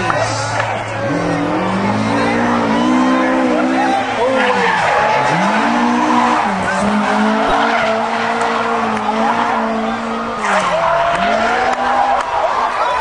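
Drift car engine revving hard, the revs climbing and falling again and again as it slides, with tyres squealing. The revs drop sharply about five seconds in and again near the end.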